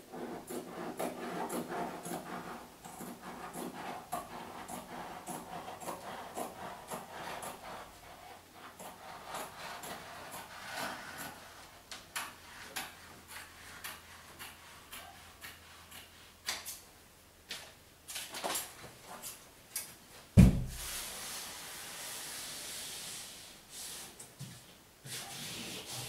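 Wallpaper being rubbed and smoothed onto a plaster wall by hand, with scattered light ticks. About twenty seconds in there is a single loud thump, followed by a few seconds of hissing rustle.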